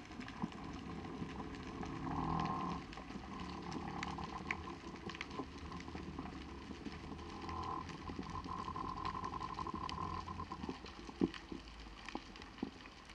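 Underwater ambience over a rocky seabed: scattered clicks and crackles with a low steady hum beneath. A mid-pitched buzz rises out of it briefly about two seconds in and again for a few seconds in the second half.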